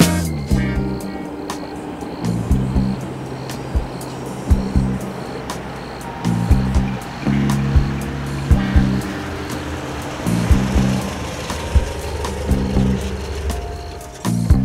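Funk-style soundtrack music with bass guitar and a steady beat, with a vehicle's engine and tyres on a wet road underneath as a van drives up.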